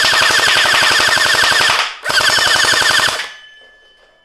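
Cosmox Toys Sirius battery-powered gel ball blaster firing full-auto: a fast, even stream of shots over its motor whine. It stops briefly about two seconds in, fires a second burst of about a second, then falls quiet.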